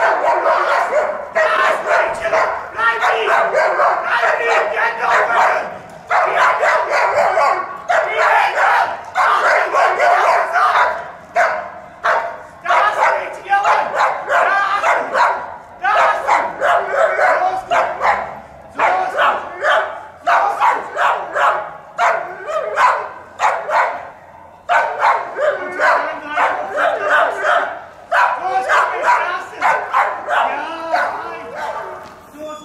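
Police service dog barking over and over in long fast runs with short pauses, loud and close, while holding a stopped suspect at bay.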